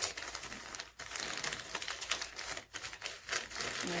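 Advertisement paper crinkling and rustling in irregular bursts as hands roll it around a small rock, with a brief lull about a second in.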